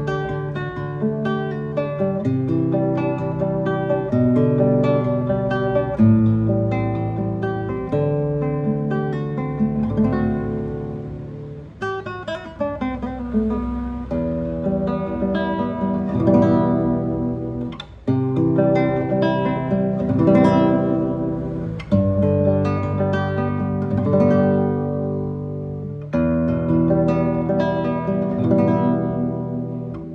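1979 Japanese-made Takamine No.5-4 nylon-string classical guitar, fingerpicked in arpeggiated chords with a full, round tone. About ten seconds in there is a descending run of notes, and new chords are struck near 18 and 22 seconds in.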